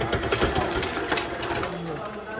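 Refrigerator door dispenser running into a plastic cup: a mechanical buzz with rapid rattling, easing off near the end.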